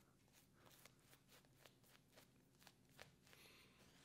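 Faint scratchy crackle of a shaving brush being worked over soap lather on the face: a string of soft, irregular clicks.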